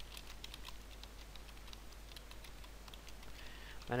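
Computer keyboard being typed on, a run of light, quick key clicks as code is entered, over a steady low hum.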